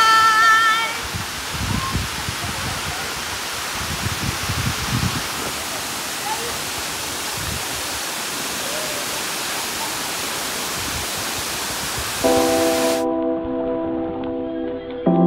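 A shout of delight in the first second, then the steady rushing noise of a tall waterfall plunging into its pool. About twelve seconds in, sustained musical chords come in over it.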